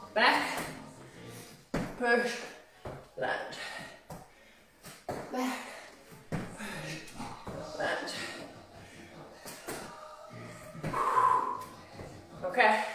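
A woman breathing hard while exercising, with short voiced exhalations every second or two and a few sharp thuds from landing on a rubber gym floor.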